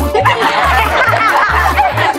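A group of boys laughing together over comic background music with a steady bass beat.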